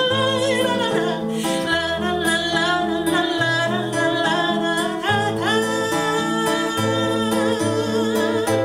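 A woman singing a slow song with vibrato, accompanying herself on a nylon-string classical guitar, with plucked bass notes under the chords.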